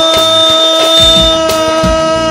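Live wedding band playing tallava dance music: one long, steady held note over a drum beat.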